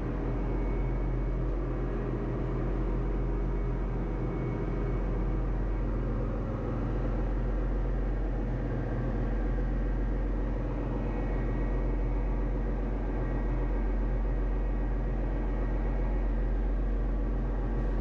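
Steady low machinery hum of a ship's engine room with several constant tones, heard from inside the scavenge air receiver of the stopped main engine.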